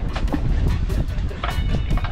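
Wind rumbling and buffeting on the microphone, with background music; a few held high notes come in about one and a half seconds in.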